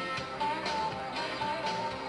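A woman singing into a handheld microphone over a guitar-led backing track, a string of short held notes.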